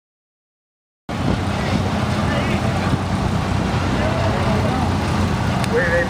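Silence for about a second, then farm tractor engines running steadily as the tractors drive past, with people's voices faintly behind them.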